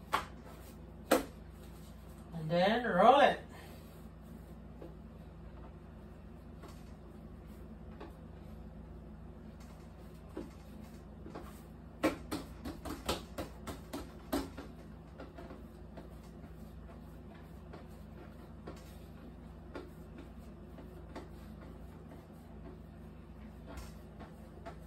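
Bread dough being rolled and pressed by hand on a wooden table: a couple of sharp knocks at the start, a brief voice-like sound about three seconds in, and a cluster of quick taps and knocks about halfway through, over a steady low hum.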